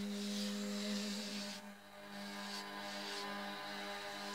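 A steady, low-pitched hum holding one note, over faint scratchy brushing of paint onto card.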